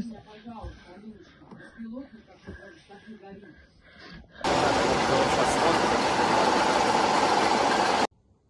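Faint voices, then about four and a half seconds in a loud, steady rushing noise with no clear pitch, which stops abruptly at the end.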